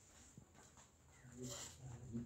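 Near silence, with a few faint, short pitched vocal sounds from a little past the middle to the end.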